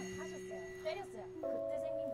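Soft background music of held, sustained notes, with the notes changing about two-thirds of the way through. Brief snatches of voices are heard over it.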